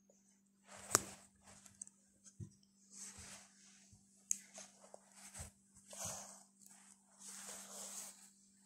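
Hands kneading a soft cheese, egg and flour dough in a glass bowl: irregular rubbing and squishing, with a sharp knock against the bowl about a second in and another near the middle.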